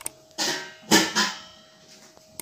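Metal pot lid being handled on a cooking pot: a short scrape, then a sharp metal clank about a second in that rings briefly.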